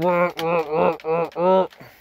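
A man's voice imitating a chainsaw revving with its chain brake on: about five short, steady-pitched vocal pulses, ending just before the two-second mark.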